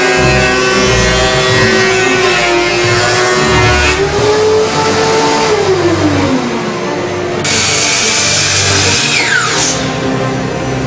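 Music with a steady low beat, over a motor whine that holds one pitch, rises a little about four seconds in, then winds down in pitch; a second, higher whine falls away sharply near the end.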